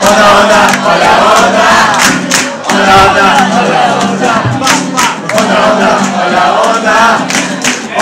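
Loud live axé-style party music with a crowd singing and shouting along over the beat.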